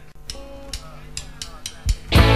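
Sparse opening of a live rock song: a held guitar note and a series of short drum taps, with a louder hit near the end as the band is about to come in.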